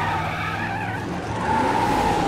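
Cartoon Batmobile tires squealing over a steady engine drone, in two long wavering squeals, the second starting about halfway through.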